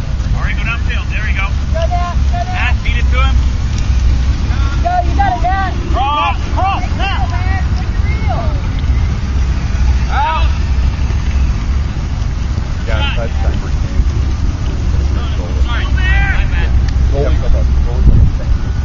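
Wind buffeting the microphone as a steady low rumble, with distant voices calling out now and then.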